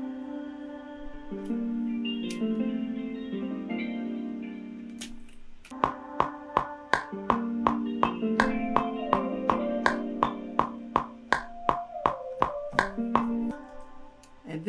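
Beat playback of a sampled guitar melody, effected with phaser, reverb, amp simulation and delay, with held chord notes shifting every second or so. About six seconds in, a sharp click on every beat joins in, steady at about three a second, alongside plucked notes.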